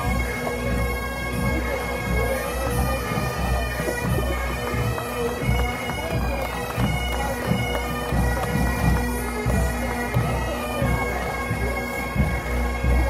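Massed Highland pipe bands playing: many bagpipes sounding a melody over their steady drones, with drum strokes under them throughout.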